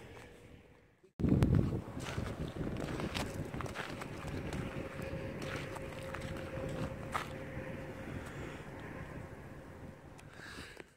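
Wind rumbling on the microphone, with footsteps on the dry salt crust. The sound drops out briefly about a second in, then the rumble runs on steadily.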